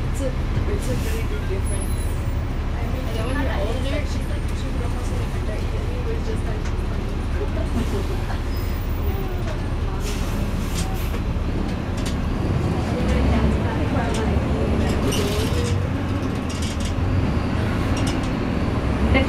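Cabin sound of a NABI 40-foot suburban transit bus under way: a steady low engine and road rumble, getting somewhat louder about two-thirds of the way through, with passengers' voices faintly underneath.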